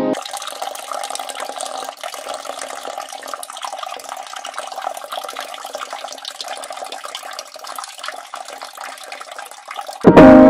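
Water running steadily in a bathroom: an even hiss of falling water.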